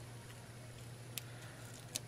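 Faint handling of a small piece of adhesive transfer tape between the fingers, with two light clicks, the second near the end, over a steady low hum.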